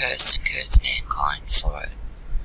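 Speech: a voice reading aloud softly and breathily, close to the microphone, with a single short click about three quarters of a second in.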